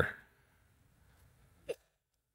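The tail of a man's spoken word, then a pause of quiet room tone, broken near the end by one brief vocal sound from the same voice.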